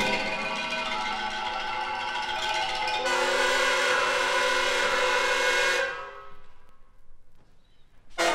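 Orchestral music: sustained, many-voiced chords, with a fresh chord entering about 3 s in. It dies away from about 6 s, nearly silent just before the end.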